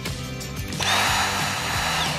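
A Dyson V6 cordless vacuum's motor starts up a little under a second in and runs with a rush of air and a steady high whine. It is a test run on a newly fitted replacement battery.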